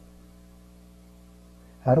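Low, steady electrical mains hum through a pause in speech; a man's voice starts again near the end.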